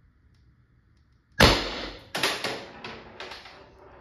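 A single sharp shot from a Salt Supply S2 CO2 less-lethal launcher firing a salt kinetic round through a chronograph, about a second and a half in, ringing off in the room. It is followed by a weaker knock under a second later and a few fainter clatters.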